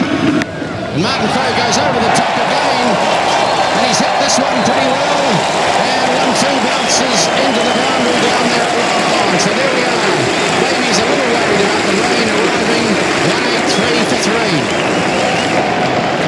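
Large cricket crowd cheering and shouting, a dense din of many voices at once that swells about a second in and holds steady, with a few sharp high cracks: spectators celebrating a boundary.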